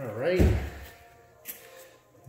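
A man's short untranscribed utterance, overlapped about half a second in by a heavy low thump, then a single sharp click about a second later.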